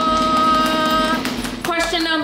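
A vocal drum roll: one voice holding a single steady note for about a second and a half, followed by talk near the end.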